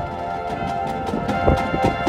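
High school marching band playing its field show: a sustained chord from the winds under a run of quick percussion taps, with a heavier hit about one and a half seconds in.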